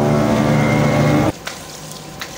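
Small commuter motorcycle's engine running steadily under way, heard from the rider's seat. It cuts off suddenly a little over a second in, leaving quieter room tone with a faint hum.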